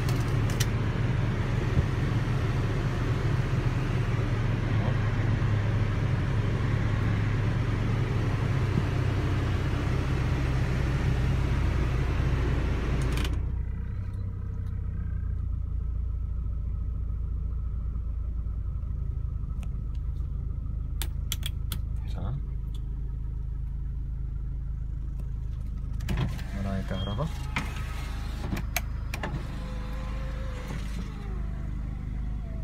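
Air-conditioning blower rushing loudly over the low idle of a 1997 Honda Accord's 1.8-litre four-cylinder engine, with the AC blowing cold. About thirteen seconds in, the blower cuts off abruptly, leaving the engine's steady low idle hum. Near the end come clicks of switches and the whine of the power-window motor.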